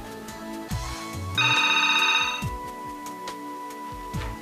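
A desk telephone rings once, about a second and a half in: one fast-warbling electronic ring lasting about a second, over background music.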